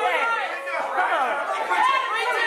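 Speech only: a man talking at the pulpit, with other voices overlapping.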